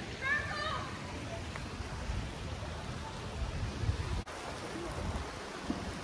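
Wind buffeting a phone microphone outdoors, a steady low rumble, with a short high-pitched voice about half a second in and a brief dropout in the sound a little after four seconds.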